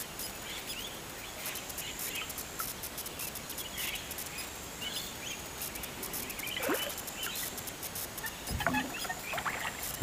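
A spinning reel being wound in while a hooked fish is played, giving many small, quick clicks. Short bird chirps are heard now and then.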